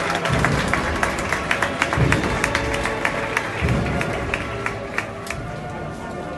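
An agrupación musical, a processional brass-and-drum band, playing a Holy Week march. Held brass notes sound over bass drum strokes about every 1.7 seconds and many sharp drum hits, easing slightly toward the end.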